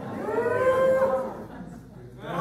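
A drawn-out vocal 'ooh', rising in pitch, held for about a second and then breaking off.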